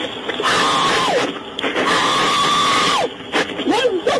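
An elderly woman screaming: two long, high, held cries, each dropping in pitch at the end, the second longer. Shorter broken cries follow near the end.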